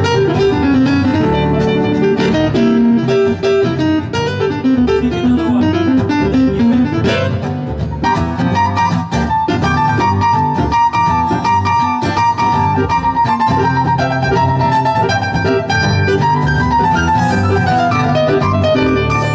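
Live acoustic band playing an instrumental break: acoustic guitar, upright bass and keyboard, with a melodic lead line moving over the steady accompaniment.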